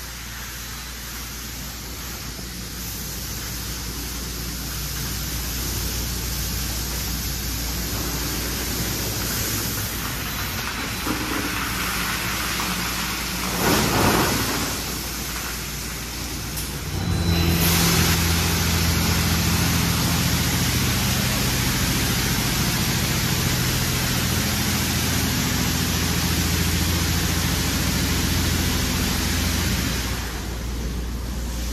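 Washworld Razor Double Barrel touchless car wash spraying water and foam over a car: a steady hiss of spray that builds gradually, with a short louder surge about 14 seconds in. From about 17 seconds it gets louder, with a steady low machine hum under the spray.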